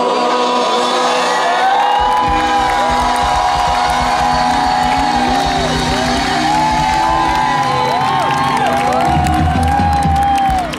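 A large concert crowd singing along in long, drawn-out lines over a live band, with some cheering. About two seconds in, the band's bass comes in underneath.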